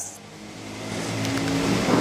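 A motor vehicle's engine noise growing steadily louder, as of a vehicle approaching.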